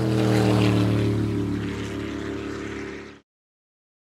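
High-performance powerboat engines running at speed, a loud pitched drone over rushing noise that falls slightly in pitch as the boat passes, then cuts off suddenly about three seconds in.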